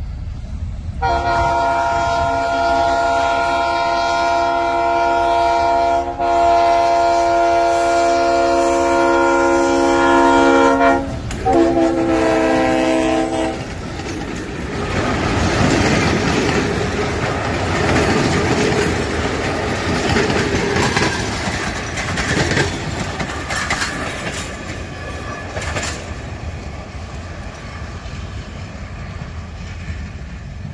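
G8 diesel locomotive sounding its horn: a long multi-tone blast broken briefly partway through, then a shorter blast. The passenger coaches then roll past with a rumble and the clickety-clack of wheels over rail joints, slowly fading.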